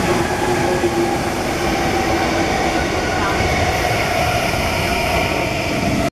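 MTR East Rail Line electric train pulling into a station platform and running past close by: a steady rumble of wheels on rail with whining motor tones that shift in pitch.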